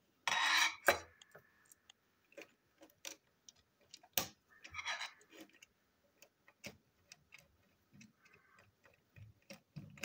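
Small screwdriver and plastic parts of a toy train engine's chassis being handled and unscrewed: irregular light clicks and taps, with a louder scrape about half a second in and another about five seconds in.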